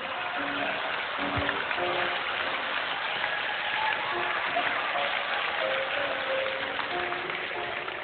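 Studio audience laughing and applauding over background music.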